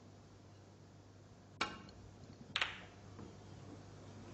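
A snooker shot: a sharp click of the cue tip striking the cue ball, then about a second later a louder crack as the cue ball hits the pack of reds and splits them.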